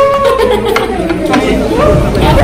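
Several people talking over one another around a table: everyday chatter.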